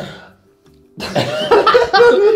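Several men laughing loudly. A laugh trails off into a short lull, then a hearty burst of laughter breaks out about a second in.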